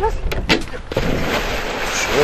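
A large Newfoundland dog jumping off a wooden jetty into a lake: a few sharp knocks about half a second in, then a big splash about a second in that lasts about a second.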